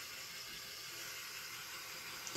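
Handheld butane torch flame hissing steadily as it is passed over wet poured acrylic paint.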